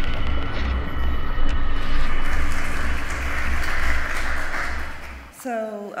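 Electronic intro sting for an animated logo: a pulsing low rumble under a noisy whoosh that swells and then fades out shortly before the end, where a woman's voice begins.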